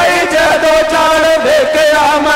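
Man singing a Punjabi Sufi bait through a PA microphone: long drawn-out notes with a wavering, ornamented pitch, with a faint regular beat behind the voice.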